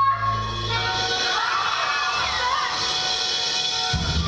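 A held sung note with the band ends just after the start. About a second in, an audience breaks into loud cheering and applause with high whoops.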